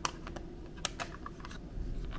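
Fingers tapping and handling an iPad in a clear plastic case: a series of light, irregular clicks and taps.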